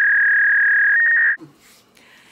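Electronic censor bleep: a loud, steady, high single-pitch beep edited over the audio. It steps slightly higher near its end and cuts off suddenly after about a second and a half.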